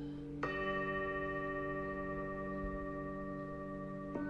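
Calm background music: a steady low drone with a ringing, bell-like chord that starts sharply about half a second in and is held.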